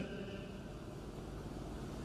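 Steady low background noise with no distinct event: the open-air hum and hiss of the venue's sound pickup.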